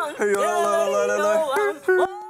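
Singing with music, long notes held steady and shifting pitch a couple of times.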